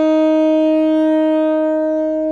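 Alto saxophone holding one long, steady note, the closing note of the improvisation, its upper overtones thinning slightly as it is sustained.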